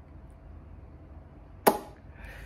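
Quiet room tone, then one sharp click near the end.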